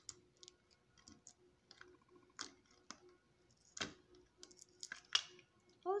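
Scattered light clicks and taps of hard plastic as fingers rummage inside a Blume doll's plastic pot, with a few sharper clicks about four and five seconds in.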